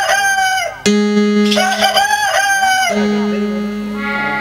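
Rooster-like crowing, twice, each call rising, holding and falling over about a second and a half. A steady held musical note sounds between the crows.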